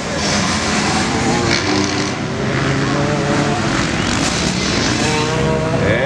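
Several motocross bikes racing past, engines revving and shifting so their pitch rises and falls, one passing close at the start. Near the end an engine revs up and holds a high note.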